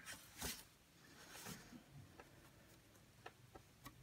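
Faint handling noise from a clear sheet being set into a picture frame: a soft rustle about half a second in, another around a second and a half, and a few light taps near the end.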